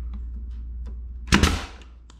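DeWalt brad nailer firing once, about a second and a half in, a sharp shot that drives a brad into crown moulding.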